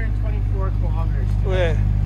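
2024 Chevrolet Corvette Stingray's mid-mounted 6.2-litre V8 idling steadily with a low, even hum.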